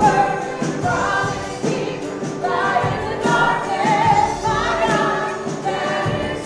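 A live worship song: two women sing into microphones, accompanied by an electric keyboard playing steady sustained notes.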